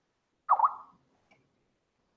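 A short electronic bloop, its pitch dipping and rising twice in quick succession, followed by a faint click.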